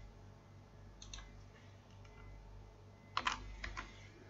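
Faint computer keyboard keystrokes: a couple of taps about a second in, then a quick cluster of several taps near the end as a short word is typed.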